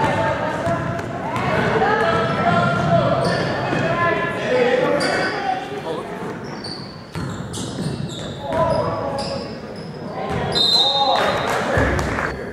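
Basketball game in an echoing gym: a ball dribbling on the hardwood, sneakers squeaking and players and spectators shouting. A referee's whistle sounds briefly near the end, stopping play for a foul.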